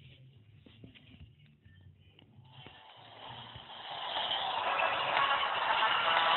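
Phone game audio, faint at first, then a noisy hiss that grows steadily louder from about two and a half seconds in as the phone's media volume is turned up.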